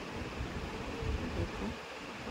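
Gas stove burner running under a small pan of oil, a steady hiss with irregular low rumbles underneath.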